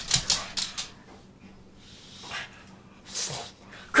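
A pug's claws clicking and scrabbling on a hard wooden floor as he dashes about in a frenzy. There is a quick run of clicks in the first second, then a few short, softer rustles.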